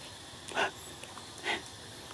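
Two short macaque calls, about a second apart.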